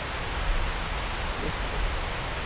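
Steady outdoor background rushing hiss with a low, fluctuating rumble.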